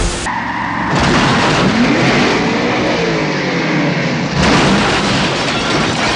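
Car engines revving and accelerating, their pitch rising and falling, then about four and a half seconds in a sudden loud crash as a truck flips over.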